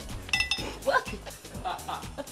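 A short, ringing clink about a third of a second in, as the champagne cork flying from a just-popped bottle strikes something hard. Women's startled cries follow over background music.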